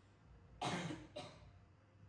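A woman coughing twice, the first cough longer and louder, the second short.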